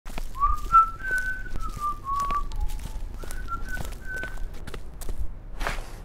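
A person whistling a short tune of held notes with small slides between them, over footsteps on concrete. A brief rustling noise comes near the end.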